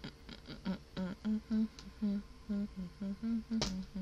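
A woman humming a tune with her mouth closed, in a quick run of short notes. A single sharp click near the end.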